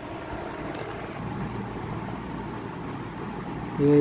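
Steady low background noise with no clear single source, a constant low rumble-like hiss.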